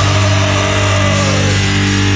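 Crust punk band holding one loud, distorted electric guitar and bass chord that rings steadily, with a higher bending note that falls away about one and a half seconds in.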